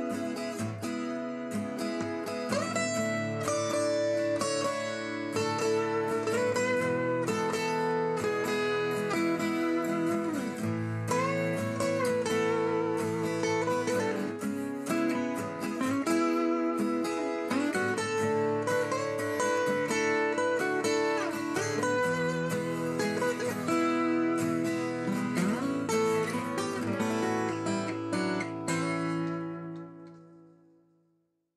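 LAG Tramontane steel-string acoustic guitar played fingerstyle: a steady run of picked melody over bass notes, with some slides between notes. The last chord rings out and fades near the end.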